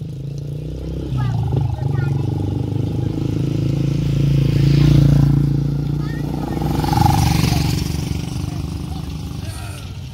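Motorcycle engines approaching and riding past close by, growing loudest about halfway through and again a couple of seconds later, then fading.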